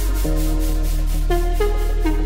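Background electronic music: a deep held bass note that shifts early on, short synth notes sliding into pitch, and a fast, even high rhythmic patter.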